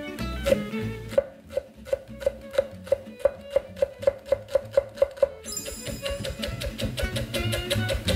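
Chef's knife slicing rolled green onion into fine shreds on a wooden cutting board: quick, even strokes about three a second, becoming faster after about five seconds. Background music plays along.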